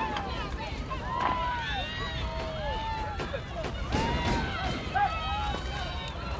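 Several human voices calling out and wailing over one another in long rising-and-falling cries, with no clear words.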